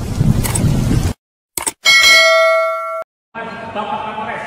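Subscribe-button animation sound effect: two short mouse clicks, then a bell-like ding that rings for about a second and cuts off suddenly. Before it, the tail of loud intro music fades out in the first second.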